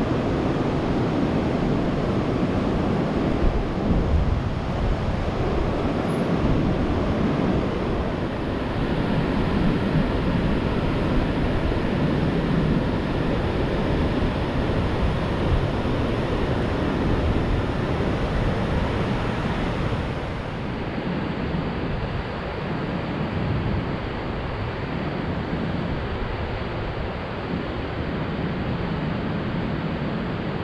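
Gulf surf washing up a sandy beach, with wind buffeting the microphone in a steady rumble. About twenty seconds in the sound turns a little duller and quieter.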